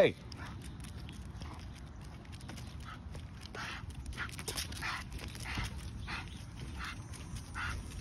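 An American Pit Bull Terrier's short, breathy huffs, about two a second, as it strains against its collar pulling on the leash.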